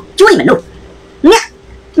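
A man's voice: two short spoken utterances, the second very brief, with pauses between them.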